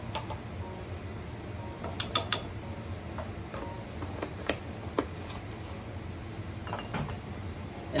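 Scattered light clicks and taps of a measuring spoon against a spice jar as ground cumin is scooped and levelled, a small cluster about two seconds in and single taps later, over a steady low hum.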